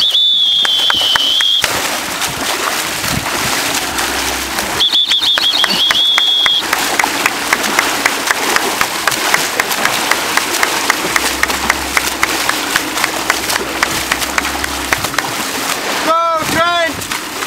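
Open-sea water splashing and rushing as a swimmer swims front crawl beside a boat, with a steady noise bed and many small splash ticks in the second half. A high, held whistle-like tone sounds twice, in the first second or two and again about five seconds in.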